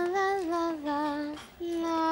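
A single voice humming a slow, lullaby-like tune in long held notes, stepping down in pitch and pausing briefly before holding another long note.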